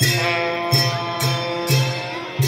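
Live traditional festival music for a masked dance: a deep drum beating about twice a second, each stroke joined by a bright cymbal crash, over steady ringing held tones.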